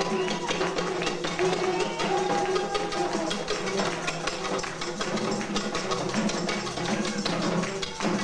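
Haitian rara-style carnival band: shoulder-slung hand drums keep a dense, fast beat while long bamboo vaksin trumpets sound steady low tones.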